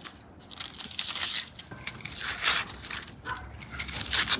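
Dry, papery onion skin crackling and tearing as a kitchen knife peels a whole onion, in a series of irregular scrapes, loudest a little past halfway.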